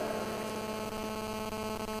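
A steady electrical hum made of several held tones, unchanging in level, over a faint hiss.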